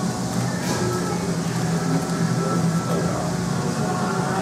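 Background music over a steady low hum.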